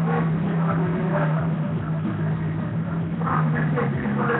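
A steady low mechanical hum, with faint voices over it now and then.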